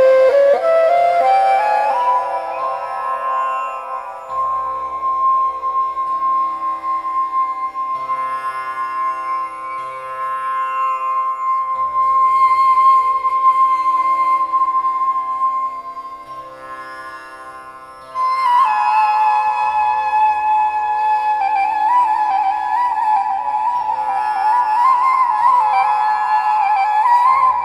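Persian ney playing a slow improvised melody over a tanpura drone plucked in a repeating cycle. The ney climbs in steps to a long held high note, which fades away about 16 seconds in. About two seconds later a new phrase starts, with wavering ornaments.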